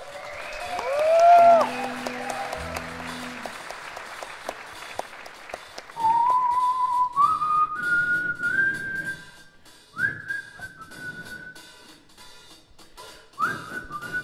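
A man whistling a slow tune through the PA in a large hall, the held notes stepping upward in pitch. In the first couple of seconds the audience cheers and someone whistles a sliding note.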